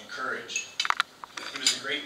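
Cutlery and dishes clinking, with a quick run of sharp clinks just before one second in and more in the second half, over voices in the room.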